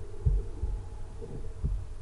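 A low steady hum with two dull low thumps, about a second and a half apart.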